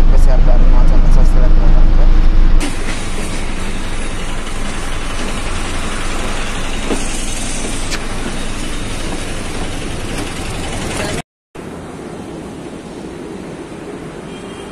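Low, steady engine and road rumble inside a moving city bus for the first couple of seconds. Then, after an abrupt cut, a quieter steady hiss of traffic and street noise. After a brief dropout it becomes a fainter steady hum.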